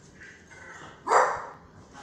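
A dog barks once, sudden and loud, about a second in, amid dogs at play.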